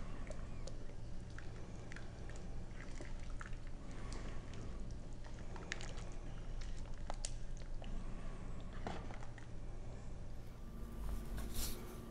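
Wooden spoon stirring a thick, chunky vegetable soup in a pot: faint wet squelching with scattered light clicks of the spoon, over a low steady hum.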